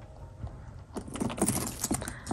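A handbag's gold metal chain strap and hardware jingling with light clinks as the bag is picked up and moved, starting about halfway through.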